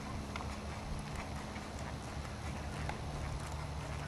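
Hoofbeats of a ridden horse: faint, soft, irregular footfalls over a low rumble.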